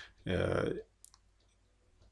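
A man's short wordless vocal sound lasting about half a second, a hesitation noise between sentences, followed about a second in by a faint mouth click.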